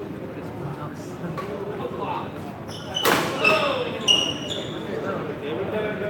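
Badminton rally sounds: one sharp racket hit on the shuttlecock about three seconds in, followed by several short, high squeaks of court shoes on the floor, over the chatter of spectators.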